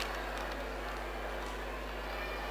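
Steady background noise with a constant low hum, and faint rustling of paper slips being unfolded near a microphone.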